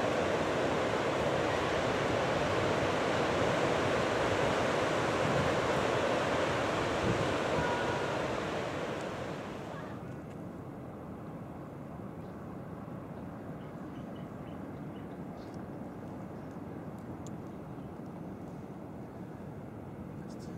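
Steady wind buffeting the microphone over the noise of ocean surf, dropping about ten seconds in to a quieter, duller water-side ambience with a few faint clicks.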